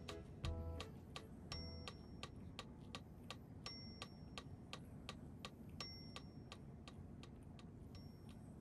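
Quiet background music: a steady clock-like ticking, a few ticks a second, with a short high ping three times about two seconds apart, after a few melody notes fade out in the first second.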